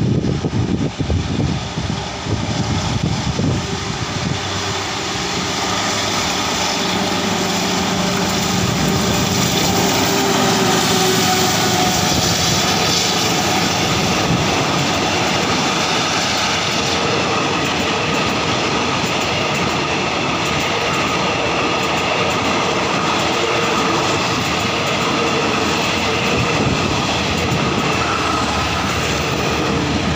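Diesel passenger train pulling out of a station and passing close by. The Caterpillar-engined Alsthom diesel-electric locomotive is running under power as it draws near and goes past, then the coaches' wheels keep up a steady rolling clatter on the rails.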